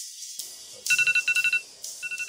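Mobile phone ringtone: a rapid electronic trill of two high tones in short bursts, starting about a second in and repeating just before the end, over music.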